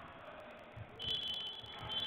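Basketball shoes squeaking on a hardwood court, two high squeaks, the first about a second in and the second near the end, with a few dull ball bounces.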